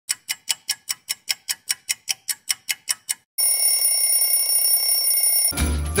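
The music cuts out for a freeze pause in a freeze-dance song, and a sound-effect timer plays: rapid, even ticking at about six ticks a second for some three seconds, then a steady bell-like ringing for about two seconds. The song starts again just before the end.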